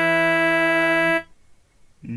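Electronic keyboard set to a harmonium-like reed tone, holding one low note, E (komal ga), which is released about a second in.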